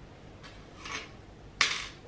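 Small metal jewellery handled on a hard tabletop. First a short scrape that swells and fades just under a second in, then a sharper, louder clatter near the end.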